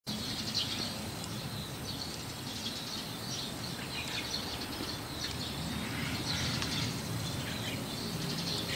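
White-cheeked starling giving soft calls, a loose series of short scratchy chirps, over a low steady background hum.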